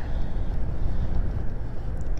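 Steady low wind rumble on the microphone, with no other clear event.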